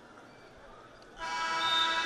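An arena scoreboard horn sounds a loud, steady tone about a second in, signalling the end of the wrestling period, over faint arena background noise.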